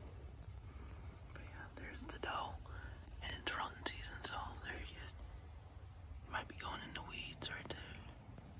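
A man whispering in two short stretches, one in the first half and one near the end, with a few sharp clicks, over a steady low rumble.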